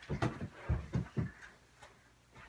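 About four dull thumps in quick succession from children running and playing in a room.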